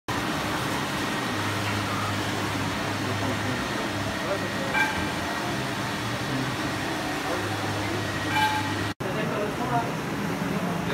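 Walk-behind floor scrubber running over a wet tiled floor, a steady whirr from its motors, with a low hum that comes and goes and two brief tones, about five seconds in and near the end.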